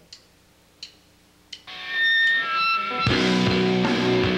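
A live rock band with electric guitars, drums and cello starting a song: after a quiet pause with a few faint clicks, a few held high notes ring out, and about three seconds in the full band comes in loud and steady.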